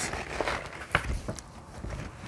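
Paper rustling as the stiff pages of a large storybook are lifted and turned by hand, with a sharp tap about a second in.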